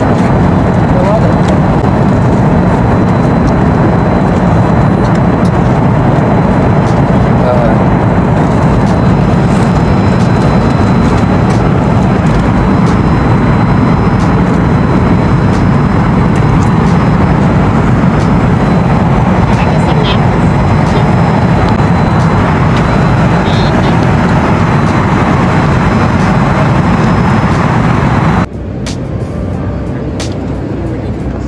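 Steady, loud airliner cabin noise in flight, the engines and rushing air sitting low and even. It drops off suddenly near the end.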